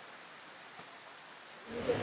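Soft, steady rain, with water running and dripping off the edge of a thatched roof.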